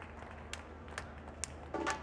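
A few sharp taps spaced about half a second apart, over quiet street ambience: the count-in of a samba percussion band about to start playing.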